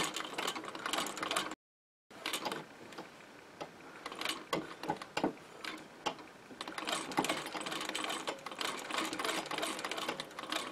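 Singer 15K treadle sewing machine stitching slowly while darning a sock, its needle and mechanism ticking with each stitch at an uneven pace that quickens in the second half. The sound cuts out completely for about half a second near two seconds in.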